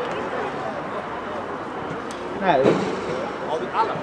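Voices calling out across a football pitch, one shout about two and a half seconds in and another shorter one near the end, over a steady outdoor background hiss.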